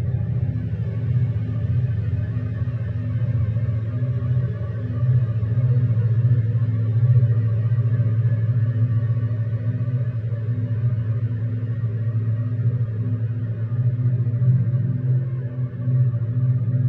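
Berlin School style ambient electronic music: a steady, deep synthesizer drone of sustained low tones, with a fainter higher layer and no clear beat.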